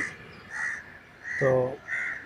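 A crow cawing in the background: a few short calls, fainter than the nearby voice.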